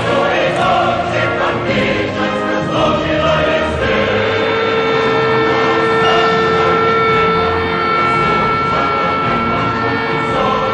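Choral music, a choir singing over accompaniment; about four seconds in, the voices settle on one long held note.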